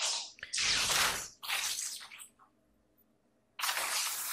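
Anime fight sound effects: four short whooshing noise bursts. The second, about half a second in, is the longest and has a low rumble under it; the last comes near the end.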